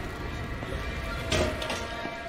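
Score of an animated series playing, with sustained tones, and one sharp hit a little over a second in.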